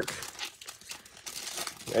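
Foil wrapper of a Donruss Optic football card pack crinkling and tearing as it is pulled open by hand, an irregular crackle.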